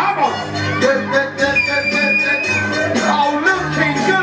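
Recorded Greek dance music playing loudly over a sound system at a slow tempo, a pitched melody line with one long held high note about halfway through.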